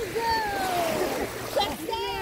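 A voice calling out in one long falling tone over water splashing as people move about in shallow sea water, with short voice sounds near the end.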